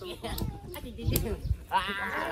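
People talking, with a sharp click about a second in, and near the end a high-pitched child's voice.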